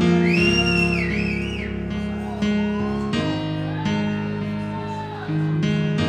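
Live band playing a song's instrumental opening on guitars: sustained chords changing every second or so, with a high gliding whoop over the music near the start.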